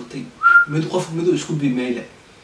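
A short high whistle about half a second in, rising and then held briefly, amid a man's speech.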